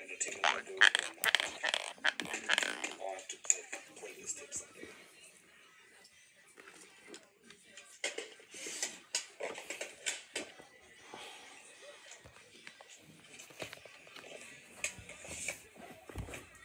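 Irregular wet mouth noises and clicks close to the phone's microphone, loudest in the first few seconds and again about halfway, over faint television speech and music.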